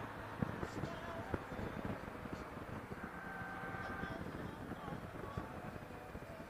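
Motorcycle riding through town, heard from the bike-mounted camera: steady engine and road rumble with wind on the microphone. A couple of sharp knocks stand out in the first second and a half.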